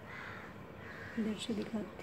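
Faint bird calls in the background. About a second in come a few short vocal sounds from a woman's voice.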